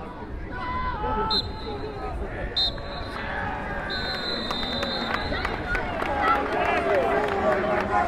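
Referee's whistle blown three times for full time: two short blasts, then a long one. Shouting voices and crowd noise run underneath.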